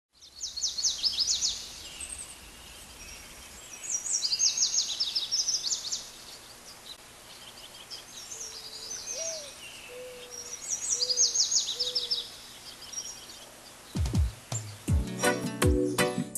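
A songbird singing in repeated bursts of rapid high notes every few seconds, with a few lower, softer calls in the middle. Near the end, a reggae beat starts with low drum hits.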